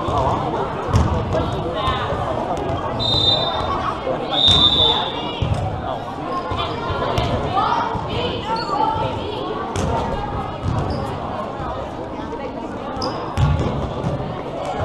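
Indoor volleyball-hall ambience: overlapping voices of players and spectators, with volleyballs thudding and bouncing on the court at irregular moments. Two short high-pitched squeaks stand out a few seconds in.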